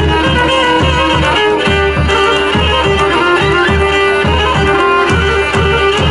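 Pontic lyra (kemenche) playing a lively dance tune over a held low note, with a daouli drum beating a steady, driving rhythm underneath.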